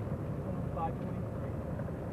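Steady road and engine noise of a car driving, heard from inside the cabin, with a faint voice fragment a little under a second in.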